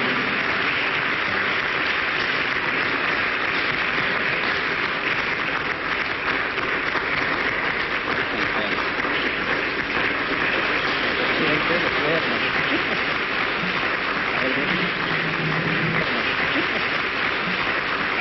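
A large crowd applauding steadily, with voices mixed in.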